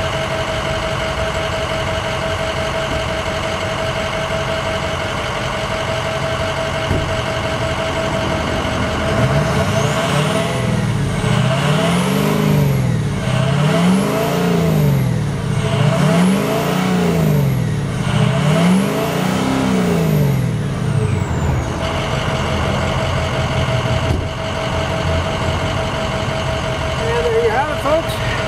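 A 6.0-litre Power Stroke turbo-diesel V8 in a 2006 Ford F-350, heard from beside its tailpipe, idles steadily, then is revved four times about ten seconds in, each rev rising and falling back, before settling back to idle.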